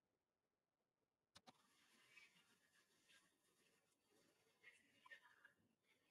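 Near silence. About a second and a half in there is a faint click, and then a very faint background sound continues.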